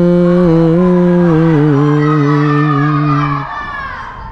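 A singer holds one long note of a Bengali devotional song, stepping down in pitch a few times before the note ends about three and a half seconds in.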